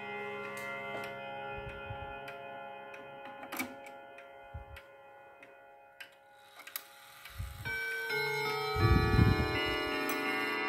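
Hermle triple-chime wall clock: the notes of its chime ring on and fade away over the steady tick of the pendulum. Then, with a few dull knocks from a hand at the dial, a new run of chime notes starts about three-quarters of the way in and grows louder.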